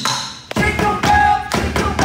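Live kitchen-cookware percussion: sticks beating on metal pots, pans and stove parts in a fast rhythm of sharp knocks and clangs, with the metal ringing between strikes.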